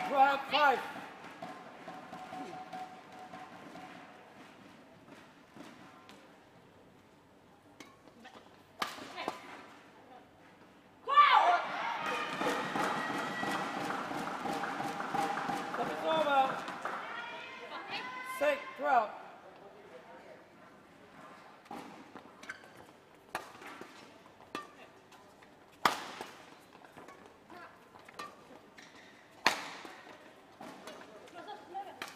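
Badminton doubles rallies: sharp racket strikes on the shuttlecock and thuds of players' footwork, spaced a second or more apart, with short player shouts. About 11 seconds in, loud shouting and crowd cheering break out as a point is won and last several seconds.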